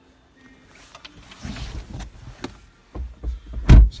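Rustling and handling noise inside a car cabin with a few sharp knocks, then one loud, low thump near the end.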